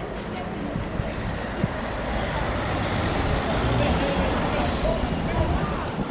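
A steady low engine rumble, like a motor idling, under a general din of people chatting in the background.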